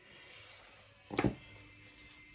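Faint background music under quiet handling of paper craft pieces on a tabletop, with a single light knock a little after a second in.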